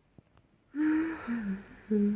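A woman's short closed-mouth hums, starting suddenly a little under a second in: one held note, then a falling one, and a third near the end.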